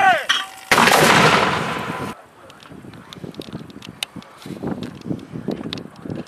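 Mortar firing: one loud blast less than a second in as the round leaves the tube, dying away over about a second and a half.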